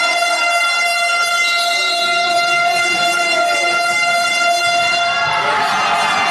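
An air horn held on one steady note for about five and a half seconds, then cutting off near the end.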